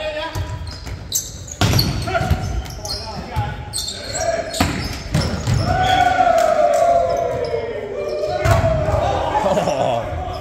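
Volleyball rally in a gym hall: several sharp, echoing smacks of the ball being hit, a second or more apart. In the second half a long drawn-out tone slowly falls in pitch.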